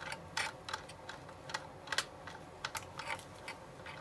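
A hand screwdriver driving small screws to fasten a radiator into a model car body: quiet, irregular light clicks, about three a second.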